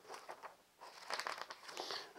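Faint rustling and crinkling of paper as a small booklet is picked up and handled, a few light crackles at first, then denser rustling in the second half.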